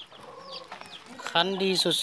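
Faint short high chirps and clucks from backyard chickens during a lull, followed by a man speaking.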